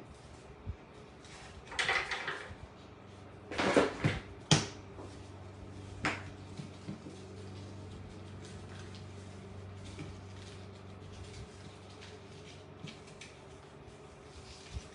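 Handling noises at a craft table: plastic wall-tile pumpkin cutouts and ribbon being moved and set down. A rustle about two seconds in, a louder clatter of two sharp knocks around four seconds, a single click about six seconds in, then only small taps. A low steady hum runs through the middle and stops about eleven seconds in.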